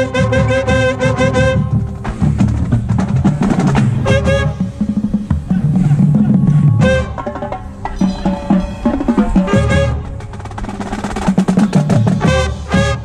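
A marching band playing: a full wind chord over drums breaks off about a second and a half in. The drums then carry the music, with a few short horn hits, until the full winds come back in near the end.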